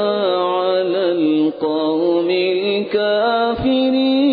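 A man's voice in melodic Quran recitation (tilawat), drawing out long held notes that waver and glide in pitch, with two or three brief pauses for breath.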